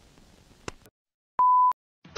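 One short electronic beep, a single steady high tone about a third of a second long, coming after faint room noise and a click. It starts and stops abruptly in dead silence, like an edited-in censor bleep.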